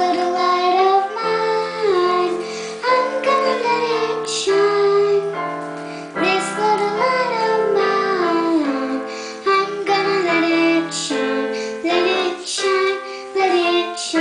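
A young girl singing a song, her voice moving from note to note over held keyboard chords.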